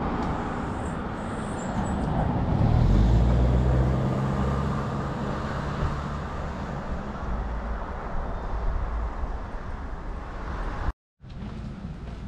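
A motor vehicle passing: a low engine hum grows louder about two seconds in, peaks around three seconds, then fades away over the next few seconds, over a steady background rush.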